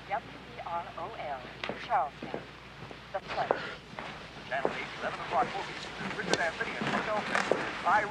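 Many people's voices overlapping in a hubbub of chatter and laughter, with a few sharp clicks or knocks scattered through it.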